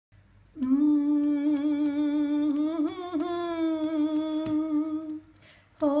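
A woman's wordless singing: one long held note with a slight waver, then a brief breath and a new note starting near the end.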